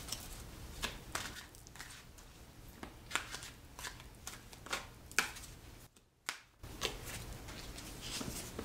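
A deck of tarot cards being shuffled and handled by hand: soft, irregular card snaps and slides, with a brief pause about six seconds in.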